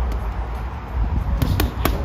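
Boxing gloves landing three quick punches on a heavy bag in about half a second, over a steady low rumble.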